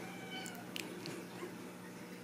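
Ragdoll kitten giving one short, high, thin meow, followed by a few faint clicks.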